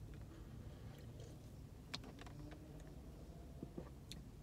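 Quiet sips and swallows from an aluminium energy drink can, heard as a few faint soft clicks over a low steady rumble.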